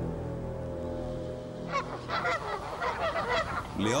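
Soft held music notes, then a little under halfway in a flock of Canada geese starts honking, many calls overlapping in quick succession.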